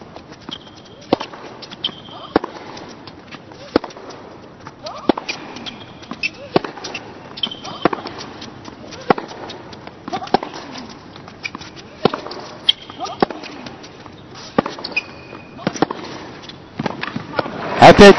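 Tennis rally on a hard court: a tennis ball being struck by rackets and bouncing, a sharp knock about every second or so, with short high squeaks between the shots.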